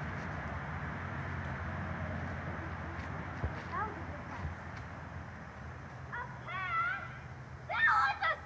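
Steady outdoor wind noise on the microphone, with a brief high-pitched distant call about six seconds in.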